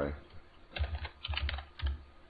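Typing on a computer keyboard: a quick run of about half a dozen keystrokes.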